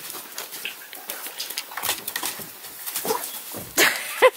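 Seven-week-old Redbone Coonhound puppies scrambling and scuffling about, their movement giving a run of small clicks and scrapes. One puppy gives a brief whine about three seconds in, and there is a loud knock near the end.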